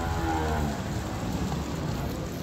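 A man's voice among passers-by: one drawn-out sound falling in pitch over the first second, over steady street background.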